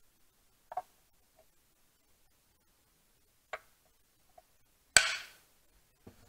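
Hard polystone statue parts clicking and knocking together as pieces are handled and pegged into place: two light clicks, then a much louder sharp knock about five seconds in.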